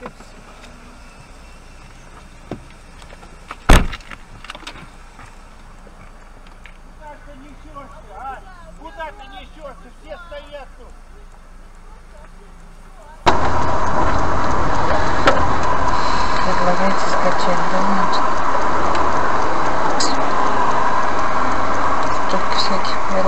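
A single sharp knock about four seconds in over a low background, with faint voices a few seconds later. From about thirteen seconds in, loud steady road and engine noise from a dashcam inside a moving car.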